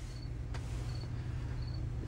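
Room tone: a steady low hum with a faint, high-pitched chirp three times and a faint click about half a second in.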